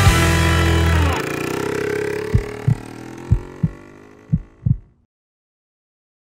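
Logo sting from the end card: a loud electronic sound effect with a deep bass drone that cuts off about a second in, leaving fading sweeping tones. Three double low thumps like a heartbeat follow as it fades, and the sound stops abruptly about five seconds in.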